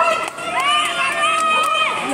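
Crowd of children and adults shouting and cheering outdoors during a children's running race, high-pitched voices calling out over one another, some in long drawn-out calls.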